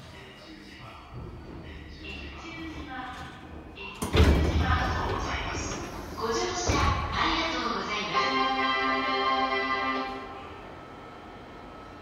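JR 205 series commuter train's pneumatic sliding doors opening: a sudden burst of air about four seconds in, then a thud as the doors reach their stops a couple of seconds later. A voice and steady musical tones play over them.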